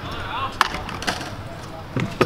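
Scooter wheels rolling over skatepark concrete, with one sharp clack a little over half a second in and faint distant voices.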